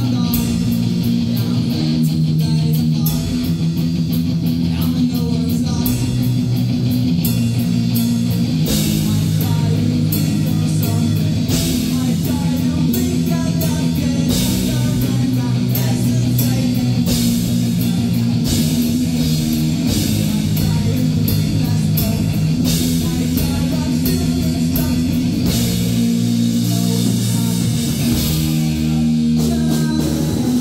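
A live rock band playing loud pop-punk: amplified electric bass and electric guitar over a drum kit with repeated cymbal hits.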